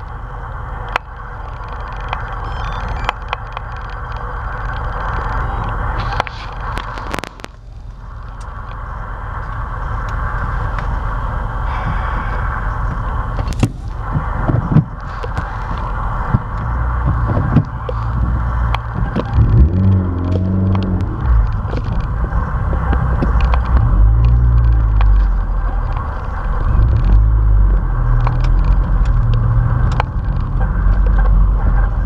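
Steady motor-vehicle road noise, with low, irregular rumbling that grows louder from about halfway through.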